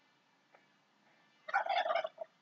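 A brief warbling bird call about one and a half seconds in, after a near-silent stretch.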